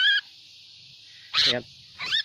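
A sooty-headed bulbul held in the hand gives a short, harsh call at the very start, the last of a run of quick chattering calls, which the trapper takes for the sign of a female.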